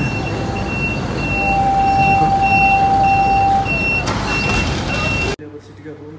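Street traffic with vehicle engines running and a high reversing alarm beeping about every half second. A lower steady tone is held for about two seconds midway, and the traffic sound cuts off suddenly near the end.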